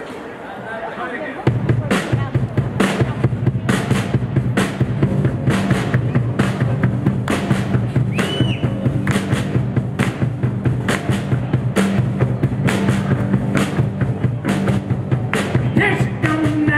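A live rock band kicks into an instrumental intro about a second and a half in: drum kit hits in a steady beat under bass guitar and electric guitar, played loud through the stage PA. No singing yet.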